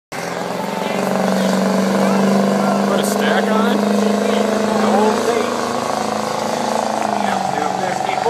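1999 Ford 7.3-litre Power Stroke V8 turbodiesel with a stack exhaust, running loud at steady high revs with a deep droning tone that climbs in the first second and then holds, with voices over it.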